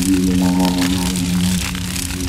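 Experimental electronic noise music: a held, buzzing low synth tone under a dense, crackling noise layer, with a brief higher chord of tones about half a second in.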